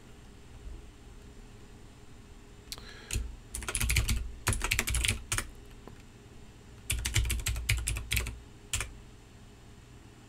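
Typing on a computer keyboard: a short burst of quick keystrokes about three seconds in, a longer run to about five and a half seconds, then another run from about seven to nine seconds, as a login name and password are entered.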